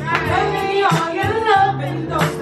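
A woman singing R&B into a handheld microphone over backing music, her voice sliding between notes.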